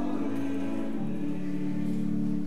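Church choir singing a slow hymn in long, steady held chords, the chord changing about a second in.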